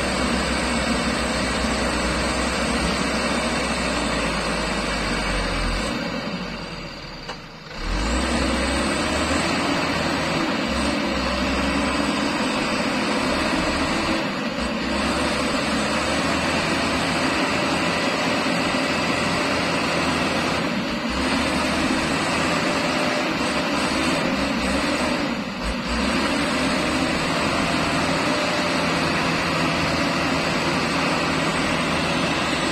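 Mitsubishi Colt Diesel truck's diesel engine working hard under load as the truck crawls through thick mud. The engine sound falls away briefly about seven seconds in and dips a few more times later.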